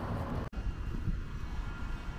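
Low, steady rumble of city-street background noise, with traffic and wind on the microphone. The sound drops out for an instant about half a second in.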